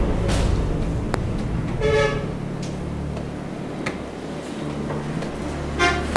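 A short horn toot about two seconds in and another brief toot near the end, over a low steady hum with a few faint clicks.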